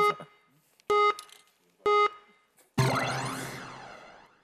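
Three short electronic countdown beeps, one a second apart, then a longer sound-effect sting with sweeping pitch that fades away: the edited-in cue before a song replay starts.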